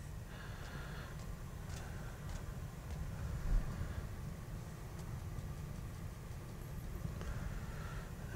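Faint bristly scratching and light taps of a one-inch brush working oil paint onto canvas, over a low steady room hum.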